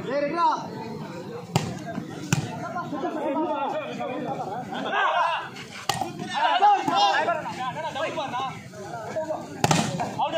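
Many overlapping voices of spectators calling and shouting, with a few sharp slaps of a volleyball being struck by hand, one of them a spike at the net about six seconds in.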